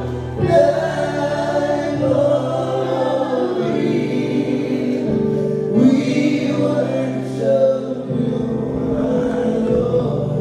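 Live gospel worship music: a man sings lead into a microphone and other voices join him, over held keyboard chords that change every second or two.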